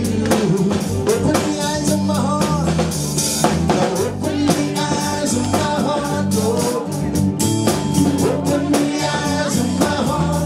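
Live gospel worship music: a man singing into a microphone over a band with a drum kit keeping a steady beat.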